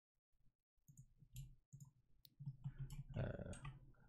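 A few faint, separate computer mouse clicks at irregular intervals.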